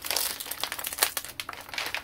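Plastic packaging crinkling and crackling as a wrapped parcel is handled and unwrapped by hand, a quick irregular run of crackles.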